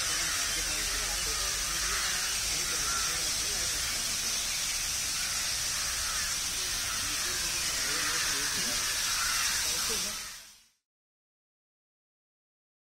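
Dandelion hemisphere fountain nozzle running: a steady hiss of water spraying from the nozzle ring and splashing into the pool, with people talking faintly in the background. The sound fades out about ten and a half seconds in.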